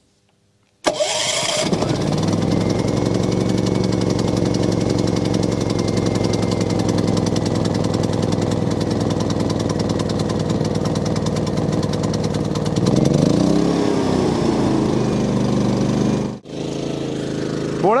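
Portable generator's engine starting about a second in, then running steadily. About 13 seconds in its speed rises and settles back. Near the end the sound drops out for an instant and carries on quieter.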